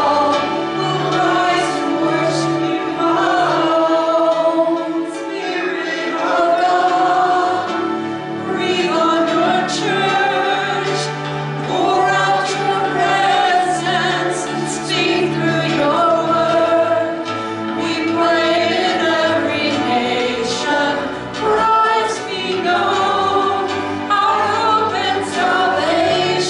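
A Christian worship song sung live by women's voices, with electric keyboard accompaniment sustaining low held notes under the melody.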